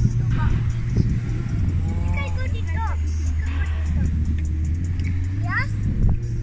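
A vehicle engine running with a steady low hum, its pitch dropping slightly about a second and a half in, under a child's high voice calling out a few times.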